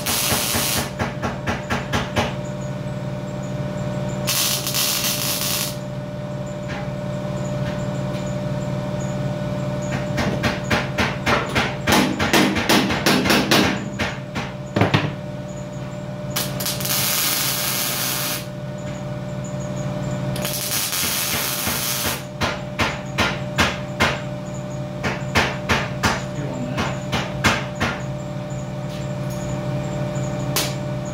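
MIG welder laying tack welds in short runs of rapid crackling and spitting. Three hissing blasts of compressed air from a hand-held blow gun come between the runs, and a steady hum sits underneath throughout.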